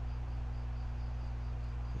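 Faint insect chirping, high pitched and rhythmic at about four pulses a second, over a steady low hum.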